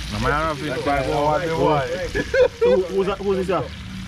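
A man's voice talking, with a steady low hum underneath.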